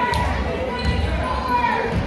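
Basketball being dribbled on a hardwood gym floor, with indistinct voices echoing in the hall.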